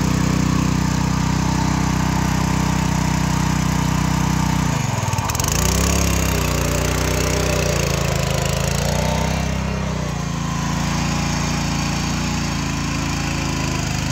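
Engine of a 7.5 hp power weeder (walk-behind rotary tiller) running steadily while working a flooded rice paddy. Its note dips sharply and recovers about five seconds in, then shifts again a few seconds later.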